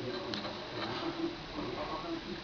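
Quiet pause: faint room noise with light handling sounds from crocheting, including one small click about a third of a second in.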